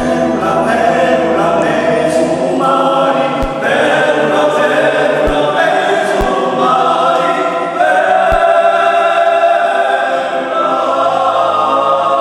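Male vocal ensemble singing Corsican polyphony, several voices holding sustained chords that shift from one to the next. A few faint low thumps fall under the singing.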